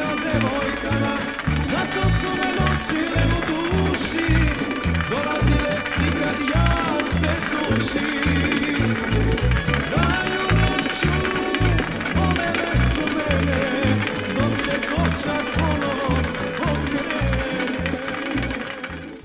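Background music with a steady beat and a voice singing a melody over it.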